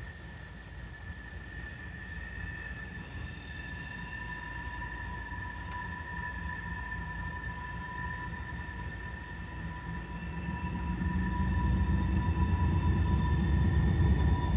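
Diesel locomotives of an approaching freight train: a low rumble that grows louder from about ten seconds in as the train draws near.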